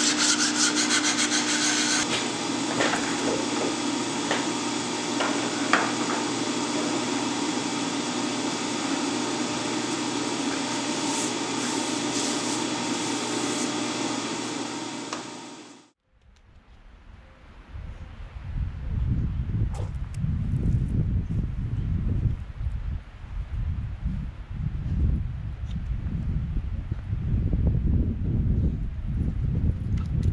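Metal shaper running and taking a light finishing cut, a steady mechanical scraping that cuts off abruptly about halfway through. After that comes a low, uneven rumble.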